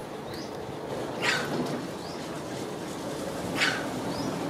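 Two short, high-pitched squeaks from a baby monkey, about two and a half seconds apart.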